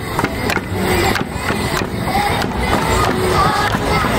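Loud music with a steady percussive beat of about three strikes a second, with short melodic notes over it.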